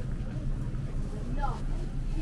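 Supermarket interior ambience: a steady low hum with faint, indistinct voices of shoppers.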